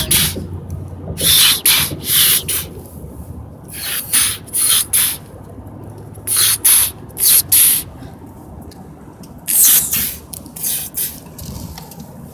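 Short, sharp hissing bursts come in clusters of three or four every two to three seconds, like a person making "shh" wind noises with the mouth to act out a tornado around a model train.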